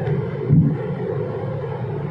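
A pause in a man's talk, filled with steady low background rumble and hiss from the recording, with a brief low sound about half a second in.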